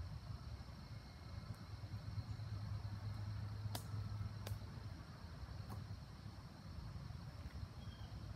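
Quiet outdoor ambience: a low, distant rumble swells and fades over the first half, with two small sharp clicks near the middle and a faint steady high hum underneath.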